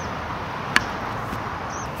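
A single sharp tennis-ball strike about three-quarters of a second in: the racket's edge hitting the ball in a pronation serve drill. A steady background hum runs underneath.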